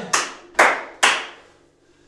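A person clapping their hands three times, about half a second apart.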